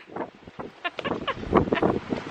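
Wind gusting across the microphone, an uneven buffeting with no steady pattern.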